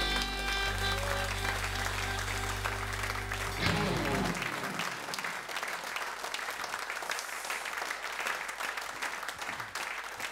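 A live band's final chord on electric guitar, bass and drums is held and ringing out over audience applause, ending about four seconds in. After that the applause carries on alone.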